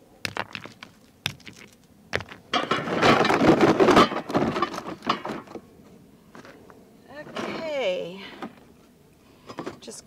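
Cast iron waffle iron parts being set down and shifted in a plastic tub: a series of knocks and clunks, with a longer, louder rattling and scraping stretch about three to four seconds in.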